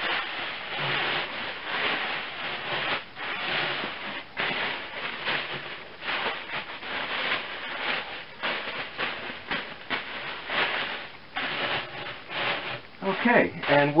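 A thin plastic dry-cleaning bag crinkling and rustling as it is draped over and wrapped around tall clay pieces, in an irregular run of crackles.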